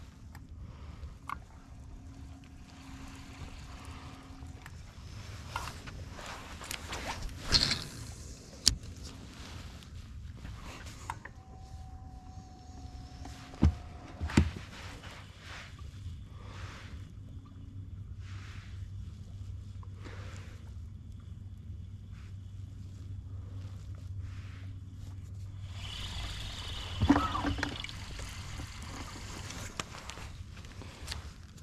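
Fishing-boat handling sounds: a spinning reel being cranked and the rod and line worked over a low steady hum. A few sharp knocks come about 8 and 14 seconds in, and a louder one comes near the end.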